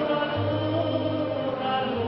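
Tenor voice singing slow, held notes of an Irish-American ballad over sustained instrumental accompaniment with a steady bass note.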